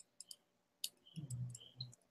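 Faint, scattered clicks of a computer mouse and keyboard while a document is edited. A brief low hum comes about a second in and lasts under a second.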